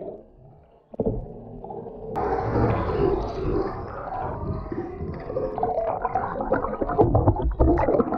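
Muffled underwater water noise and bubbles, picked up by a camera as a shark mouths and bumps against it. After a nearly quiet first second comes a sharp knock about two seconds in, then a steady rumble with scattered knocks and scraping that grow denser near the end.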